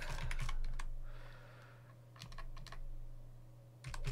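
Keystrokes on a computer keyboard: a few separate, unhurried key clicks, a couple near the start and a small run about two and a half seconds in, as letters are typed one at a time.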